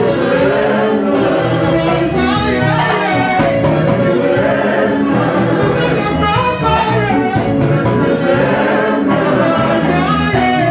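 Live Congolese band music: several voices singing over electric guitar and a steady drum beat with cymbal strokes.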